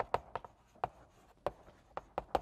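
Chalk writing on a blackboard: a series of sharp, irregular taps as the letters are written.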